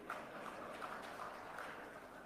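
Faint room tone in a hall, with no clear event standing out.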